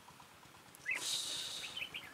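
Red-whiskered bulbuls giving short chirps, with a loud high hiss lasting about a second midway.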